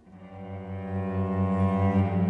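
Live chamber music from a piano quartet's strings: a low cello note enters after a pause, pulsing quickly and evenly, with violin and viola above it, all swelling in a steady crescendo.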